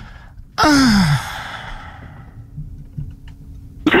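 A person lets out a short, sighing laugh: one breathy vocal sound about half a second in that falls steeply in pitch and fades away.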